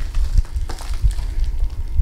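Soft rustling and crackling of fluffy white packing fill being pulled away from a potted plant by hand, over a low, uneven rumble of handling bumps.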